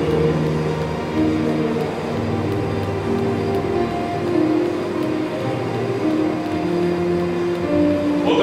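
Electronic keyboard playing soft, sustained chords that shift slowly from one to the next.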